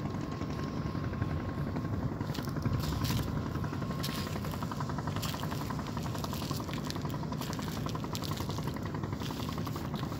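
An engine running steadily: a low drone with a fast, even pulse that comes through more clearly from about halfway in.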